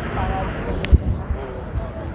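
Indistinct voices of people talking in the background, with a single sharp thump just under a second in.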